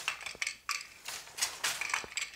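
Wooden floor loom being woven on: a few sharp clacks and rattles as the wooden shuttle is thrown and caught and the beater and shafts move.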